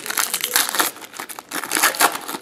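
Foil wrapper of a hockey card pack crinkling in the hands, in several crackly bursts, the loudest at the start and near the end.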